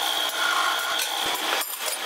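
Drill press bit cutting into a steel motorcycle sprocket, a steady high whine over harsh noise that breaks off briefly near the end.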